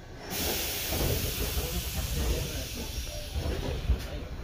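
Electric train starting to pull away from a station: a loud steady hiss starts suddenly a moment in and cuts off abruptly near the end, over the low rumble of the train getting under way.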